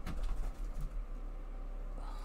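Faint cooing of a pigeon in the background, over a low steady hum.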